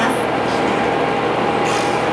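Steady running noise inside a diesel railcar's passenger cabin, with a faint steady tone over it and a brief hiss near the end.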